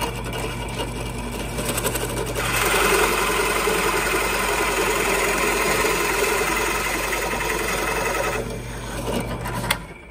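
Drill press running with a Forstner bit boring a flat-bottomed hole into a mahogany board. The cutting sound grows louder from about two and a half seconds in and eases off about eight and a half seconds in, leaving the motor's hum, which stops just before the end.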